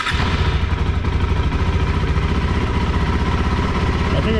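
KTM 390 Adventure's single-cylinder engine, just fired up on the electric starter, running at a steady idle with an even pulse.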